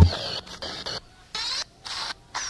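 Drum and bass music cuts off abruptly, leaving a gap filled with short, high, squeaky sliding sounds broken by brief silences.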